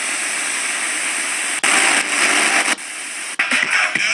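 Portable speaker's FM radio giving loud static hiss, switched on suddenly, the hiss jumping in level a few times as the tuning changes, with music starting to come through near the end.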